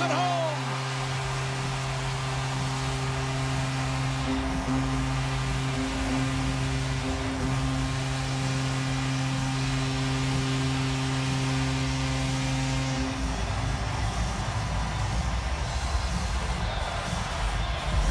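Arena goal horn sounding in long steady blasts with a few short breaks over a noisy crowd, cutting off about 13 seconds in; deep bass-heavy music follows.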